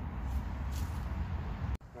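Steady low outdoor rumble with a few faint rustles, cutting off abruptly near the end.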